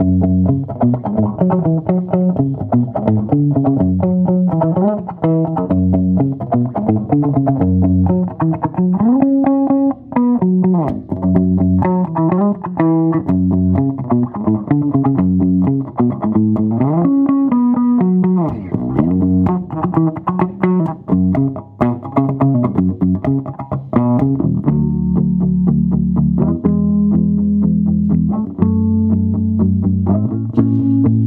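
Mid-1960s Höfner 500/6 electric bass played with a pick on its bridge pickup alone, running through quick melodic bass lines, then settling into a few longer held low notes near the end.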